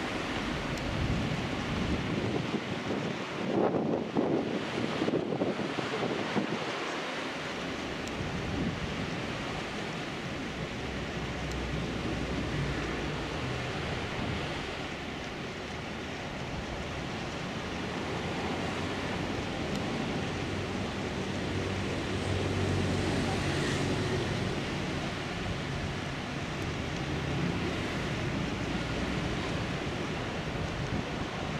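Wind buffeting the microphone over steady outdoor sea noise, with a stronger gust about four seconds in. A faint low hum runs under it in the second half.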